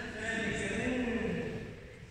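A person's voice holding one long drawn-out sound with a wavering pitch, fading away about a second and a half in.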